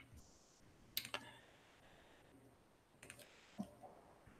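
Near silence broken by a few faint computer mouse and keyboard clicks: two quick clicks about a second in, then a few softer clicks and a light knock after about three seconds.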